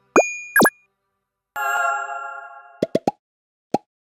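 Cartoon-style animation sound effects: two quick rising pops, then a bright chime about a second and a half in that fades over about a second, then three fast pops in a row and one last pop near the end.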